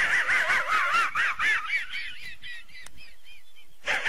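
Muttley's wheezing snicker from the Hanna-Barbera cartoon: a fast run of rising-and-falling hee-hee notes, about five a second, trailing off about three seconds in.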